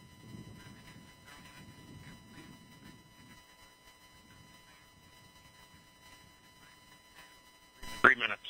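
Near silence on the launch control audio feed: faint, indistinct voices and a low murmur over a steady electronic hum, with a sudden loud burst right at the end.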